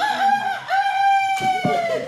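A rooster crow, cock-a-doodle-doo: a short first note, then one long held note that falls slightly at the end.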